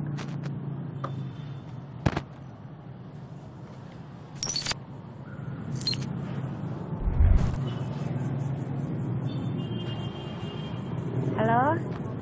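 Motor scooter engine idling with a steady low hum, broken by a few sharp clicks and a low thump about seven seconds in. Short electronic beeps of a phone call come through around ten seconds in.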